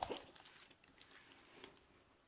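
Faint rustling and light clicks from a diamond painting canvas being handled, with one sharper click at the start.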